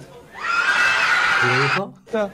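A shrill burst of excited voices lasting about a second and a half, noisy and high-pitched, with a man's voice briefly near the end.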